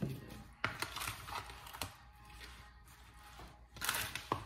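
Plastic spatula stirring and scraping seasoned raw chicken in a bowl, with two sharp knocks of the utensil against the bowl, the first under a second in and the second just under two seconds in.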